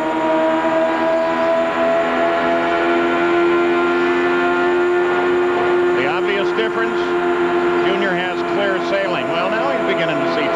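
Two IRL IndyCar V8 engines heard through onboard cameras, screaming at steady high revs on the straight. About six seconds in, and again near the end, their pitch dips and rises as the cars enter the turn.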